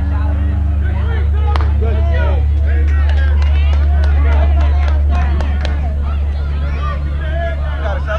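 Indistinct chatter of spectators over a loud, steady low rumble, with a few sharp clicks.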